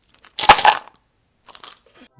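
A short crunching burst of handling noise with one sharp click about half a second in, then a fainter rustle near the end: a plastic supplement bottle and its cardboard box being handled.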